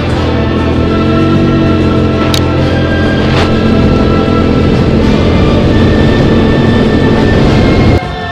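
Background music over an ATV engine running, its low drone rising and falling. Two short sharp knocks come a couple of seconds in.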